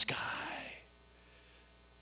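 A man's breathy exhale after a spoken word, fading out within the first second, then near silence: room tone.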